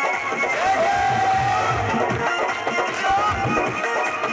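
Live devotional bhajan music from a small stage band, with a long held melodic note from about a second in.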